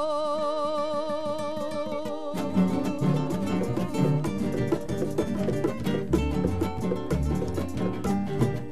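A woman holds a long sung note with a wide vibrato over light guitar. About two seconds in, the acoustic guitars break into fast, rhythmic strumming of a Mexican folk song.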